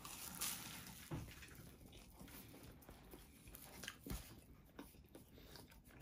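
A bite into a flaky-pastry chicken tikka pasty, with a faint crunch just after the start, then quiet chewing with a few soft crackles of the pastry.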